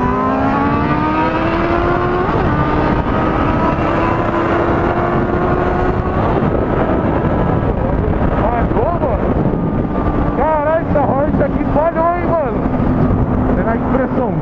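Honda Hornet 600 inline-four engine at high revs on the move, its pitch climbing steadily for about six seconds, then dropping back and holding steady, under heavy wind rush.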